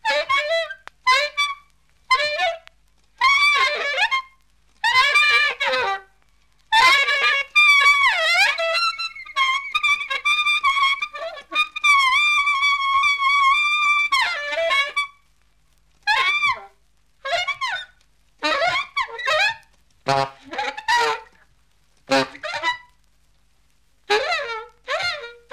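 An unaccompanied free-jazz horn plays short, high phrases separated by brief silences. It swoops in pitch about eight seconds in, then holds one long high note for about four seconds before breaking back into short phrases.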